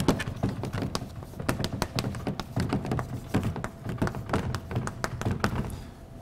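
Chalk writing on a blackboard: a quick, irregular run of taps and short scratches as a heading is written out stroke by stroke.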